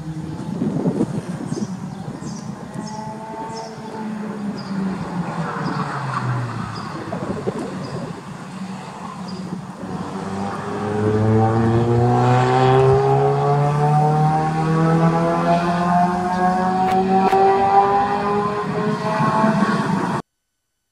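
Sports car engine heard from trackside as the car laps the circuit: it revs up through the gears, drops in pitch as it slows for a corner, then accelerates with a long, steadily rising engine note that grows louder over the second half.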